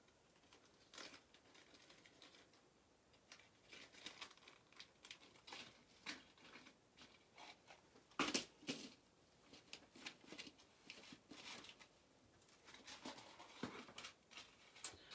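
Quiet, scattered clicks and light rustles of small objects being handled on a table, with one louder knock about eight seconds in and a busier patch of clicks near the end.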